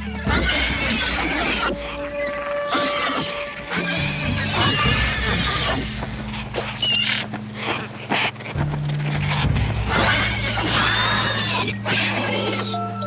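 Film score with low sustained notes under bursts of shrill squawks and screeches from seabirds and small raptors squabbling, coming several times, with the loudest bursts near the start and again near the end.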